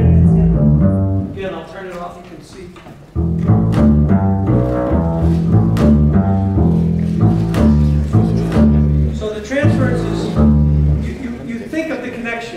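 Upright double bass played pizzicato: a line of low plucked notes that fades out about two seconds in and starts again sharply about a second later. It demonstrates plucking with the weight of the arm carried into the string, the hand kept relaxed.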